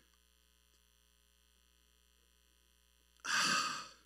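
A man drinking from a water bottle, then, about three seconds in, a loud breathy sigh of relief as he finishes the drink.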